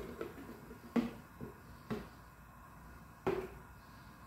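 A few light knocks and clicks, about four in all, as a plastic tub of tomato sauce is handled and a ladle is dipped into it and lifted out.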